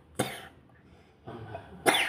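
A person coughing: two loud, sharp coughs about a second and a half apart, with a softer one just before the second.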